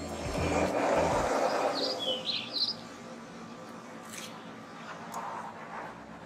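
Background music ending in the first second or so under a brief rush of outdoor noise, then a few short bird chirps about two seconds in, over quiet outdoor ambience.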